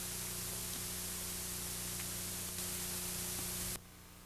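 Steady hiss from a VHS tape transfer, with a low mains hum under it; the hiss drops off abruptly near the end.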